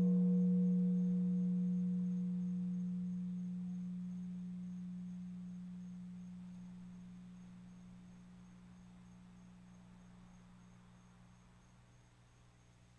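A small hanging gong, struck once with a mallet just before, ringing on with a clear low note and a few fainter higher overtones. The ring fades steadily until it has all but died away near the end.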